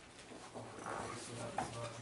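Dry-erase marker squeaking and tapping on a whiteboard as words are written, with a sharp tap about one and a half seconds in.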